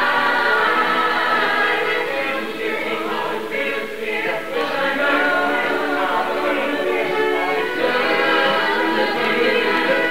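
A chorus of stage-musical cast voices singing together, the ensemble dipping in loudness partway through before swelling again.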